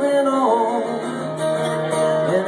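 Live solo acoustic guitar, strummed, with a man's voice holding out a long sung note.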